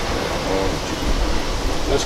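Steady outdoor background noise: an even hiss with a low rumble underneath, no distinct events.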